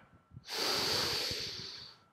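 A man's single long, audible breath while holding a yoga lunge. It starts about half a second in and fades away near the end.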